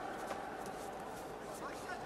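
Steady background noise of a large sports hall, with faint distant voices.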